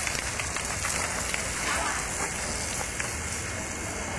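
Steady hissing background noise with no clear events, and a faint voice heard briefly about halfway through.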